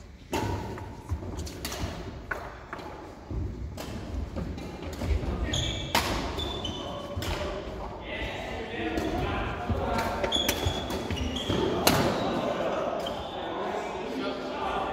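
Badminton rally in a reverberant sports hall: racquets striking the shuttlecock with sharp cracks at irregular intervals, with footsteps and short high squeaks of shoes on the wooden court floor.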